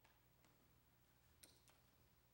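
Near silence: quiet room tone with a few faint, short clicks, the sharpest pair about one and a half seconds in.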